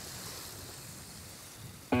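Steady wash of sea surf and wind, an even hiss with no distinct events. A music chord cuts in abruptly right at the end.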